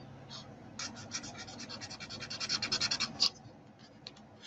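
Stampin' Blends alcohol marker tip scratching quickly back and forth over a small piece of cardstock as it colours it in, about eight strokes a second. The strokes get louder toward the end and finish with one sharper stroke about three seconds in.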